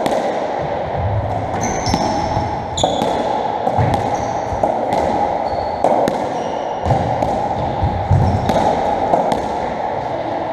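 A racketball rally on a squash court: the ball cracks off the rackets and the walls in repeated sharp, echoing knocks, about one a second, with short high squeaks from the players' shoes on the wooden floor. A steady background hiss runs under it.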